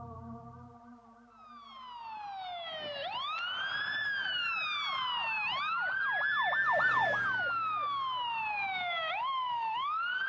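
Police car siren fading in about a second and a half in, going in slow rising and falling wails, with a quick run of short yelps in the middle, as ambient music fades out at the start.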